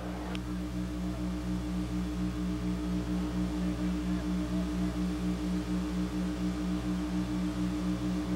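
A low, steady hum of a few stacked tones, pulsing evenly at about five beats a second.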